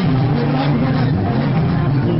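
Live band music with strong bass, with the voices of a dense crowd mixed in.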